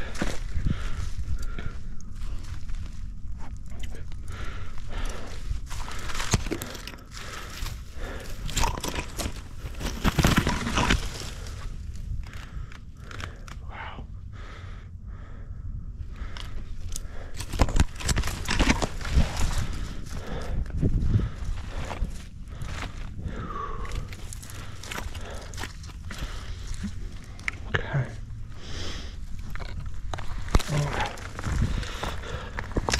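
A dog moving over dry grass and dead leaves, close to the microphone: irregular rustling and crunching, with louder bursts of crunching about ten seconds in and again near twenty seconds.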